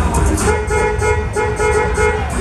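A horn toots in three short blasts, starting about half a second in, over a steady low rumble.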